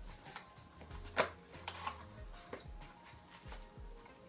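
A small cardboard box handled and opened by hand: a few short taps and rustles of card, the sharpest about a second in.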